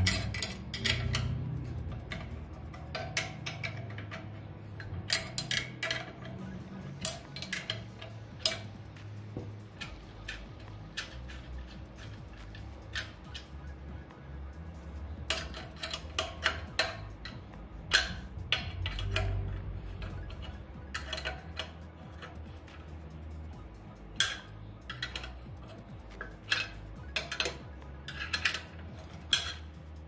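Half-inch steel wrench clinking against the nuts and steel flange of a pellet stove burn pot as the mounting nuts are loosened, with irregular sharp metallic clicks and clinks throughout. Near the end comes the handling of a removed nut and lock washer.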